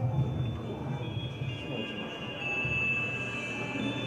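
Soundtrack of an animated video played over hall loudspeakers: music with long held high notes over a low drone, the high notes swelling about halfway through.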